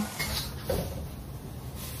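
A single knock, a metal utensil against the wok, about half a second in, over a steady low rumble from the gas hob and range hood.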